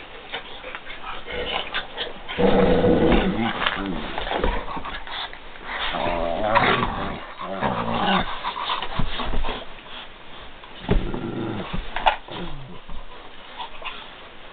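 Dogs play-growling during rough play, in irregular bursts of wavering growls with short pauses between, loudest a couple of seconds in.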